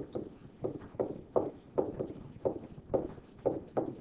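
Stylus strokes of handwriting on a writing surface, heard as a regular series of short knocks about three a second.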